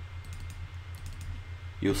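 Faint computer clicks in two small clusters over a steady low electrical hum, while the computer is being operated; a man's voice starts near the end.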